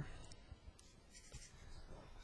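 Faint scratching of a black felt-tip marker on paper in a few short strokes, drawing a bond line and a letter.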